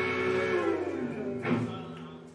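Rock band's final chord on electric guitars ringing out and fading, its notes sliding down in pitch about half a second in, with a last sharp drum hit about one and a half seconds in as the song ends.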